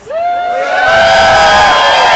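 Rally crowd cheering and shouting in answer to the speaker's call. It swells within the first fraction of a second and holds loud, with many voices overlapping.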